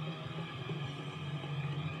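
A low, steady room hum with faint rustling of a large paper LP insert being handled and held up.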